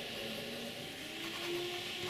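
Steel nib of a Jinhao 992 fountain pen writing on Rhodia paper: a faint, steady hiss as it glides smoothly across the page, with faint low tones underneath.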